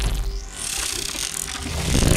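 Film sound effects of a machine powering up: a high whine rising over the first half-second, then dense crackling over a deep rumble, as the terminator's body sparks and burns.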